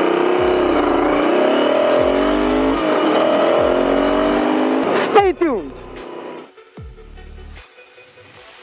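Royal Enfield Interceptor 650's parallel-twin engine pulling hard away from a traffic light, revs rising and dipping, with wind rush. The engine sound ends abruptly about five seconds in with a falling sweep, leaving a much quieter background.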